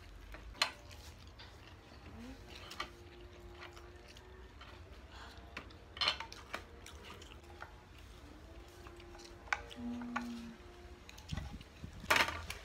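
Eating by hand from plastic plates: fingers picking at fried chicken and rice, with scattered light clicks and taps against the plates, the loudest about half a second in and about six seconds in.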